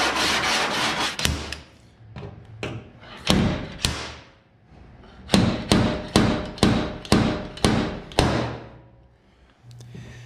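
A metal body file rasping in quick strokes across the bare, guide-coated sheet steel of a truck bedside, showing up the high spots. After a lull comes a run of about seven sharp, evenly spaced strokes, roughly two a second.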